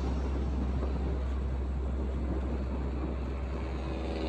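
Motorcycle riding at a steady cruising speed: a steady low engine drone under even road and wind noise.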